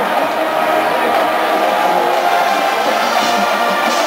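Marching band of brass, woodwinds and drums playing a sustained passage, steady in loudness.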